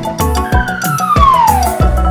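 Children's background music with a steady beat. Over it, a single whistle-like tone glides down in pitch for about a second and a half: a cartoon sound effect as the next letter comes on screen.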